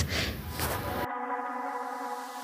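A second of faint room noise, then background music cuts in about a second in: a quiet, sustained electronic chord held steady.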